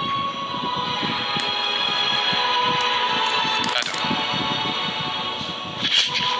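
Background music: steady held tones over a low, pulsing beat, with a brief whoosh about four seconds in.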